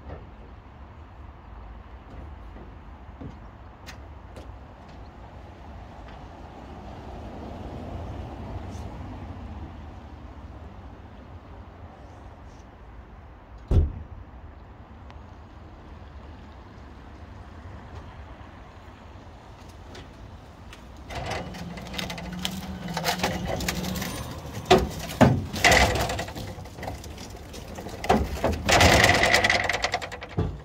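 Car unloading off a car-transporter trailer: a steady low rumble with a single sharp knock about halfway through, then from about two thirds in a run of metal clanks and knocks, with a brief hum among them.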